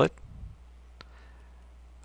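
A single computer mouse click about a second in, over a low steady hum.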